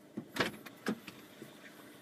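A few short knocks and clicks of someone moving about and handling things inside a vehicle, the loudest about half a second in.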